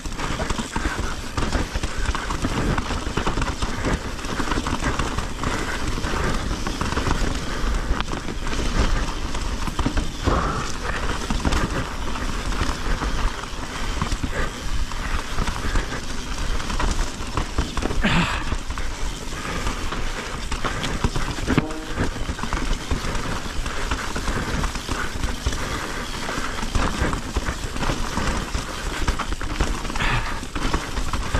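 Mountain bike riding fast down rocky dirt singletrack. The knobby tyres crunch and chatter over rocks and roots, and the bike rattles with a dense stream of small knocks.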